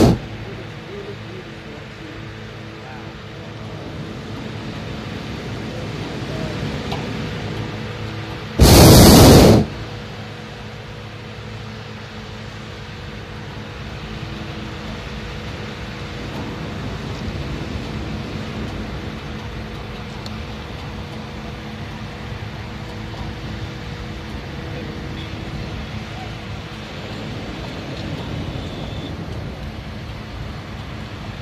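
Hot air balloon's propane burner firing in a loud blast of about a second, about nine seconds in, with the end of an earlier blast at the very start. In between there is only a much quieter steady background.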